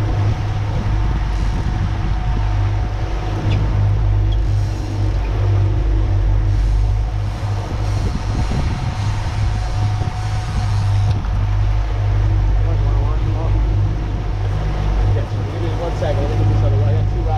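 Twin outboard motors running steadily with the boat under way, a constant low drone with a steady higher hum, over the rush of water and wind.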